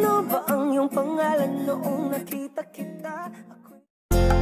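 Background music: a song with singing over a plucked guitar, fading out just before the end.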